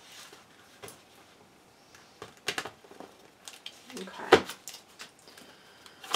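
Tarot cards being handled and shuffled by hand: scattered soft clicks and taps of cards against each other, with a short spoken word about four seconds in.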